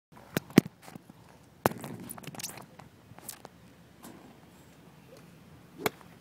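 Handling noise from a phone camera being positioned on the ground: a series of sharp knocks and bumps, the loudest near the start and one just before the end, with rustling between them.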